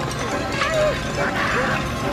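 Cartoon soundtrack: short, pitched yelping and whimpering cries over orchestral background music.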